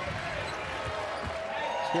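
Steady arena crowd noise with a few faint basketball bounces on the hardwood as a player dribbles at the free-throw line.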